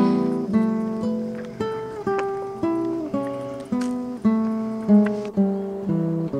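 Background music: acoustic guitar playing picked notes and chords, a new one about every half second, each ringing and fading.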